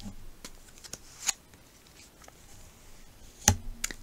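Tarot cards being handled: a card drawn from the deck and laid on a velvet cloth, heard as a few soft scattered taps and card slides. The loudest tap comes about three and a half seconds in.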